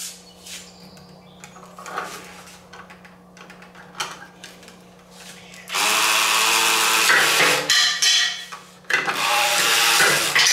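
Kobalt battery-powered toy reciprocating saw cutting a toy wooden block, a loud buzzing whir. It starts about six seconds in after a few light handling knocks, drops off briefly, then runs again near the end.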